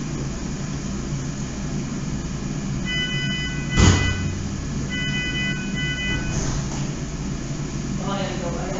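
Steady low hum, joined twice by a held tone of several pitches, about three and five seconds in. A single loud knock comes just before four seconds.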